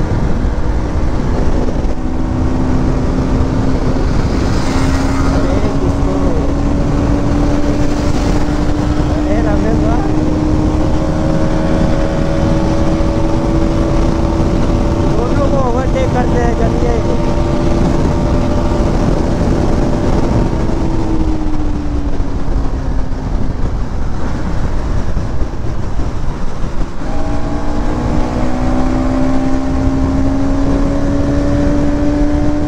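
Sport motorcycle engine held at high revs at speed, with a steady rush of wind noise. The engine note climbs slowly for about twenty seconds, drops as the throttle is eased, and starts rising again near the end.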